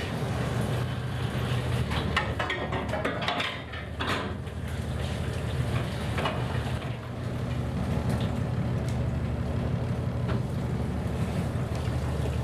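A fishing trawler's engine and deck machinery running with a steady low drone, with scattered clanks and knocks from gear on the working deck.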